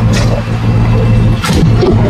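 An engine running steadily with a low, even hum, broken by two short noisy bursts, one just after the start and a louder one about a second and a half in.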